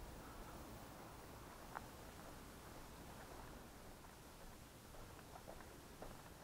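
Near silence: faint background hiss, with a single faint tick a little under two seconds in.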